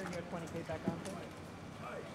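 Indistinct voices talking, with a few sharp clicks and knocks, the loudest about a second in.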